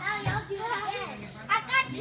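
Children's high-pitched voices calling out during a grappling scramble, with a short low thump about a quarter second in and a louder cry near the end.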